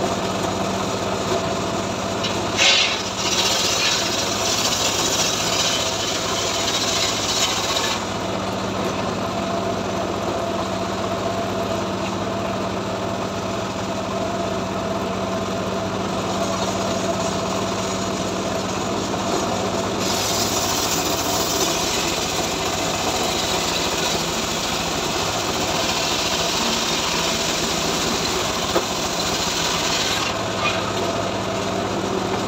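Homemade engine-driven circular log saw (srekel) running steadily, its blade ripping lengthwise through a mahogany log with a harsh rasping hiss. The cutting starts with a knock about three seconds in, eases off while the log is repositioned and the blade spins freely, then resumes about two-thirds of the way through.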